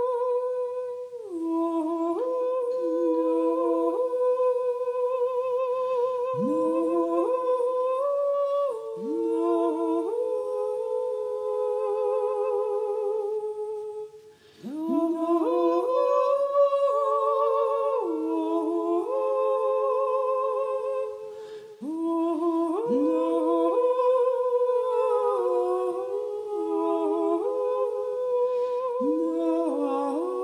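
Layered, multitracked wordless humming by a woman's voice: several long notes with vibrato held over one another in harmony, each new note sliding up into place. The sound briefly thins out about halfway through and again about two-thirds through.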